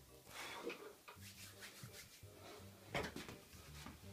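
Faint rubbing and small creaks of a person settling onto a weight bench, with one sharper knock about three seconds in.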